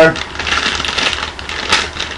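Crinkly plastic packaging of a toy-car blind bag being handled and torn open: a dense run of small crackles and rustles, with a sharper crackle near the end.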